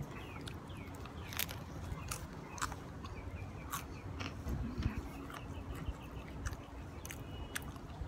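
A person chewing a mouthful of soft deep-fried potato pastry, with small wet mouth clicks and smacks scattered through, over a low rumble of wind on the microphone.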